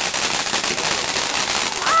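A ground-level consumer firework spraying sparks, with a dense, steady crackling hiss. A person shouts just before the end.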